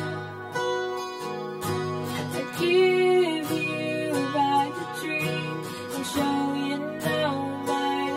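Acoustic guitar strummed steadily under a young female voice singing held, gliding notes: a home cover of a slow pop-rock ballad.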